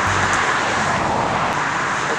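Steady rushing noise of highway traffic.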